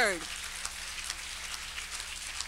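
Steady, faint crackling room noise with scattered light clicks over a low hum, in a pause between spoken lines.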